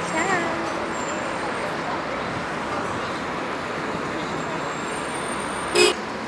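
Steady city street noise: road traffic running past, with faint voices of passers-by early on.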